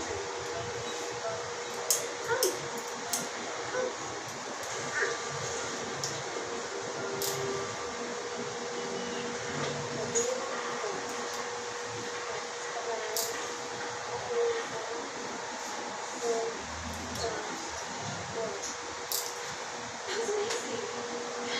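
Metal dental hand instruments clicking against teeth and brace brackets, a few quick clicks about two seconds in and single ones scattered after, over a steady hiss and hum of dental-office equipment.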